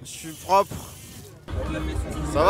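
A short rising voice over a high hiss, then, about a second and a half in, an abrupt switch to louder outdoor festival ambience: a low rumble of distant music and crowd.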